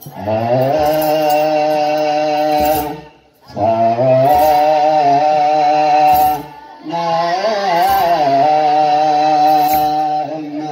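Children's choir chanting wereb, Ethiopian Orthodox liturgical song, in three long held phrases with short breaks between them. Metal hand sistrums (tsenatsel) are shaken in short jingles through the singing.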